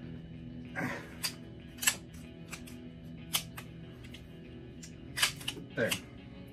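A 1911 pistol being worked by hand: a handful of short, separate metallic clicks from its slide and parts, over quiet background music.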